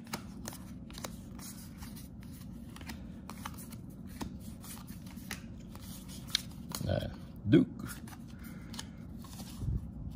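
Stiff paper trading cards being handled and flipped through by hand: quick light clicks and slides as cards are pulled off one another and set down.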